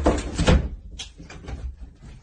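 A bedroom door thrown open with loud bumps, then a sharp click about a second in and lighter knocks after it.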